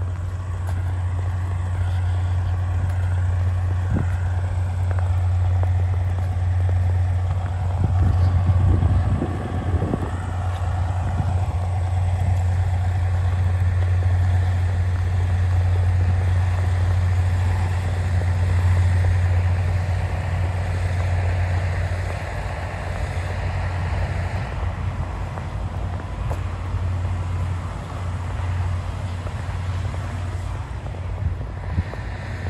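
Steady low drone of a running engine, unchanging in pitch and level, with a few brief knocks about eight to ten seconds in.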